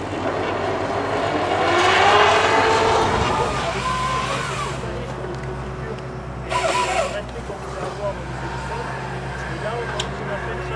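Diesel engine and hydraulics of a New Holland tracked excavator working a log grapple: the engine rises in pitch as it revs up over the first few seconds, then runs at a steady, lower pitch. A short burst of noise about six and a half seconds in.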